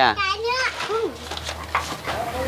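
Speech only: a short spoken reply, then faint children's voices in the background.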